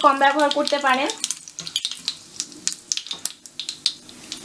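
Whole spice seeds and dried red chillies sizzling in hot oil, a dense crackle of small pops, while a spatula stirs them in the pan: the tempering of spices for a pickle.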